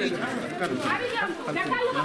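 Several people talking over one another at once, a dense babble of overlapping voices.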